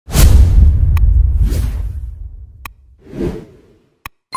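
Intro-animation sound effects: a loud whoosh with a deep rumbling boom that fades away over about two and a half seconds, followed by two softer whooshes and two sharp clicks.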